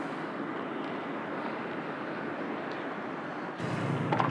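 Steady outdoor background noise, an even rushing haze with no distinct events. It shifts abruptly to a fuller, lower hum near the end.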